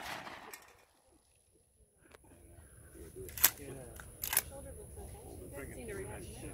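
The tail of a shotgun blast dies away. After a short break, two sharp cracks come about a second apart, over faint voices.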